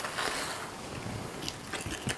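Faint stirring of a runny spice-and-water paste in a small glass bowl, a couple of light clicks near the end over a steady background hiss.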